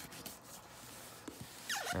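Utility knife blade slicing through packing tape and cardboard along the seam of a shipping box: a scratchy rubbing with a few small clicks.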